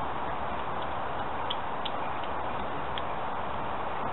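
Small twig-and-shaving kindling fire over a tea light crackling with a few faint, sparse pops over a steady background hiss.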